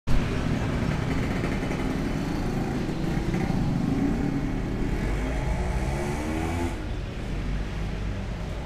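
A motor vehicle's engine running close by, its pitch rising and falling, and dropping away at about seven seconds. There is a short knock at the very start.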